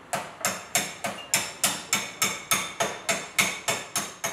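Hammer striking metal in a steady rhythm, about three to four blows a second, each blow with a short metallic ring: body-shop panel work on sheet metal.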